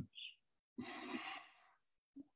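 A soft breath like a sigh, lasting about half a second, a little under a second in, in an otherwise quiet pause.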